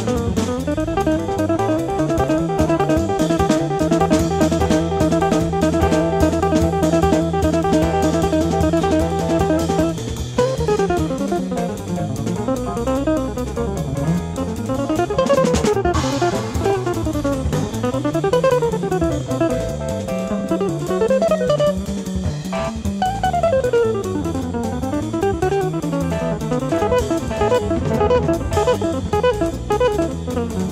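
Jazz guitar recording with bass and drums. For the first ten seconds the guitar repeats a figure over sustained bass notes; from about ten seconds in it plays fast single-note runs sweeping up and down.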